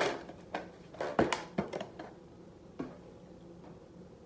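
Rubber bands stretched over the hole of an empty cardboard cracker box strummed by hand, giving a few short plucked sounds in the first second and a half, then lighter knocks of the box being handled.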